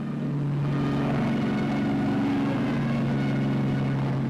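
Piston aircraft engines at takeoff power, a steady drone that holds level throughout.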